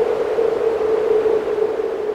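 A steady electronic ambient drone holding one mid-pitched tone over a soft hiss, slowly fading.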